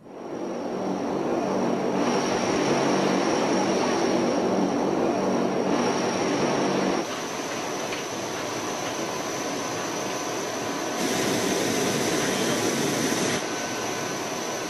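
Cargo aircraft engines running with a steady drone. The sound shifts abruptly about seven seconds in, and again about eleven seconds in and shortly before the end.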